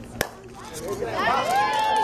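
A single sharp crack of a bat hitting a softball, then spectators' voices rising into cheering, with one long high shout held from about a second and a half in.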